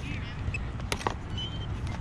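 Two sharp clicks about a second in as a steel digging knife is worked into turf and dirt, over a steady low rumble and faint distant children's voices.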